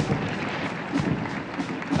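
Military band march music over an even wash of crowd applause, with a few thuds from the marching guard's steps.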